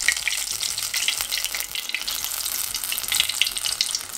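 A whole scotch bonnet pepper sizzling in hot oil in a cast-iron pot: a steady, dense crackle of small pops. The oil has been heated to the point of hazing and smoking.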